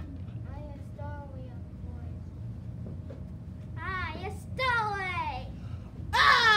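Children's voices: faint talk in the first second and a half, then two louder calls that fall in pitch, about four and five seconds in, over a steady low hum.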